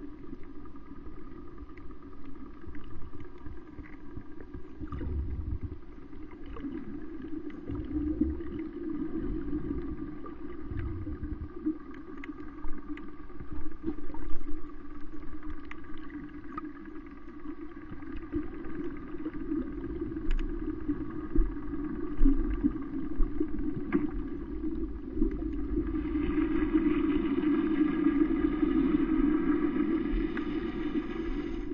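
Underwater recording: a steady low drone with several humming tones over it, typical of a boat engine heard through the water, louder near the end. Scattered faint clicks and a few low bumps run through it.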